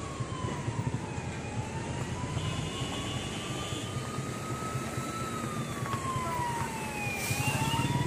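A siren-like wail whose pitch slowly falls and rises every few seconds, over a steady low rumble.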